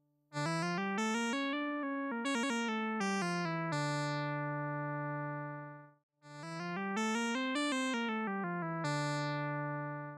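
A VCV Rack lead synth, a short-pulse square wave blended with a triangle wave an octave below, played solo from a computer keyboard in D minor. There are two short phrases of quick notes that climb and fall back, and each ends on a long held low note that fades out.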